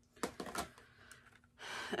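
A few light clicks and rustles from wax melt packages being handled and picked out of a basket, bunched together in the first half second or so, followed by softer rustling.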